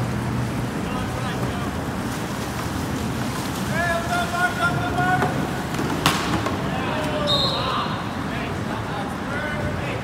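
Canoe polo players shouting to each other over a steady hiss of wind and water, with a few held calls about four to five seconds in and one sharp knock about six seconds in.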